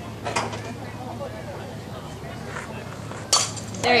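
Softball bat striking a pitched fastpitch softball: a single sharp crack about three seconds in, over faint crowd chatter.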